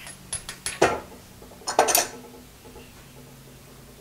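Steel rod clicking and clinking against the steel rollers and guide plates of a rod bending jig as it is bent round and taken out. A run of sharp clicks in the first second is followed by a louder cluster of metallic clinks with a short ring about two seconds in.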